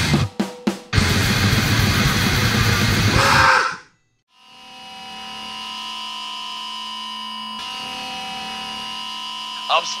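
Fast hardcore punk / powerviolence song with distorted guitar and drums, a couple of abrupt stop-start hits about half a second in, then the track cuts off about four seconds in. After a brief silence a steady electrical hum fades in and holds, with a voice starting at the very end.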